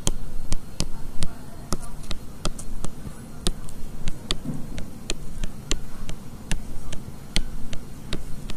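Short sharp taps of a stylus pen striking a touchscreen as lines and small circles are drawn, irregular at about three or four a second.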